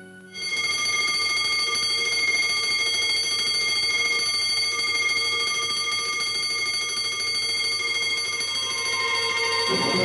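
Electric alarm bell ringing continuously at one steady high pitch, starting suddenly just after the start. Orchestral film music comes back in near the end.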